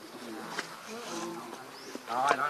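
Faint, distant voices of people over a steady buzz of insects, with a brief click about half a second in.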